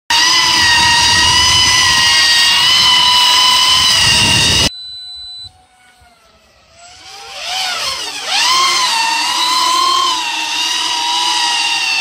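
Electric motors and propellers of a foam VTOL RC plane whining loud and high at power. The sound cuts off suddenly about five seconds in and stays faint briefly. It then returns, dipping and climbing in pitch around eight seconds in, before settling into a steady high whine.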